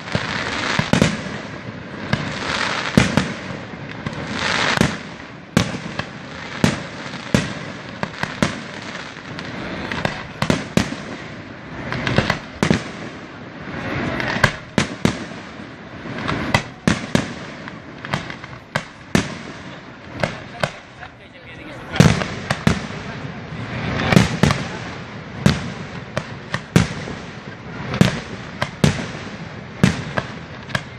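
Aerial fireworks display: shells bursting in an irregular run of sharp bangs, one to several a second, with crackling between the reports.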